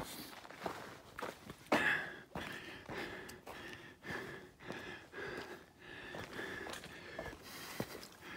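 Footsteps of a hiker walking on a dirt and rock trail, a step about every half second, with his breathing close to the microphone between the steps.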